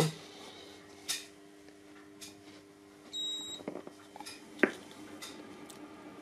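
Anycubic Photon resin 3D printer's buzzer giving one short high beep about three seconds in as the printer powers up, over a faint steady hum, with a few soft clicks.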